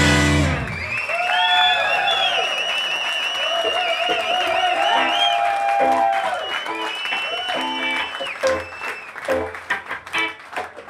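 Live blues-rock band: a full-band hit at the start, then an electric guitar playing alone with long bent notes and vibrato, the band coming back in with short stabs near the end.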